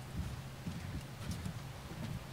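Faint, irregular low thumps of footsteps and knocks on a stage, picked up by a podium microphone over a steady low hum.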